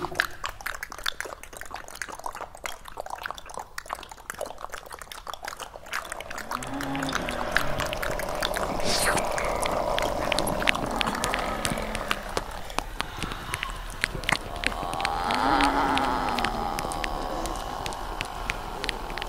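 Experimental electroacoustic sound piece made of dense, irregular clicks and crackles. A noisy band swells twice, with a short, low, arching tone inside each swell.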